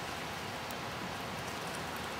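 Steady outdoor background noise: an even hiss with no pitch and no distinct events.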